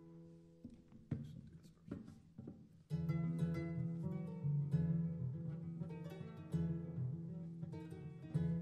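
Plucked strings playing a song's instrumental intro: a few sparse notes at first, then about three seconds in a louder, fuller picked pattern with strong low notes.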